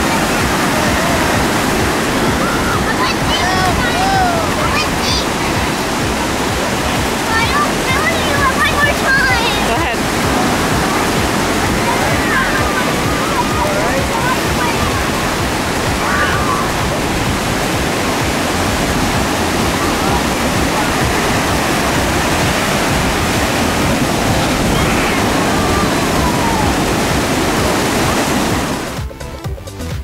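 Atlantic surf breaking on the beach in a steady wash of waves, with children's shouts and squeals over it. The surf sound drops away just before the end.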